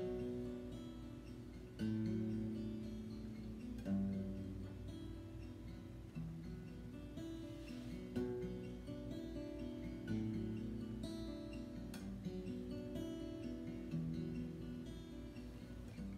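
Steel-string acoustic guitar playing a finger-picked, note-by-note arpeggio through a B minor chord progression with a descending bass note (B, A, G, E) under an unchanging upper shape. A new chord comes in about every two seconds.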